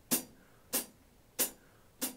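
Sparse drum hits from a background drum track: three sharp strikes about two-thirds of a second apart, each ringing out briefly.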